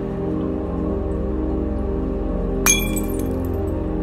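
Logo-intro music: a sustained low droning chord, with one sharp glassy clink hit about two-thirds of the way through that rings briefly.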